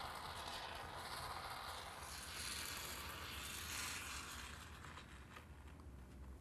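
Foam gun dispensing low-expanding window and door foam into the gap at the window head: a faint, steady hiss that fades near the end.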